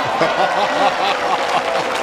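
Laughter in quick repeated bursts over a crowd of spectators applauding a good shot.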